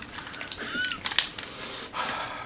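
A person's mouth noises while the mouth burns from an extremely hot chili-coated peanut: a short high squeak-like whimper, a couple of sharp clicks, then a hard exhale through the wide-open mouth near the end.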